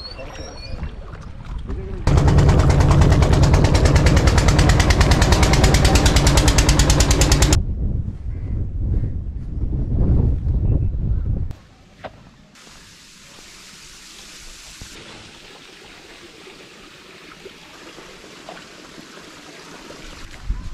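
An engine chugging very loudly and fast with a low hum, starting abruptly about two seconds in after some water and wind noise, and cutting off abruptly a few seconds later. Lower rumbling follows, then from about halfway a quiet, steady outdoor background.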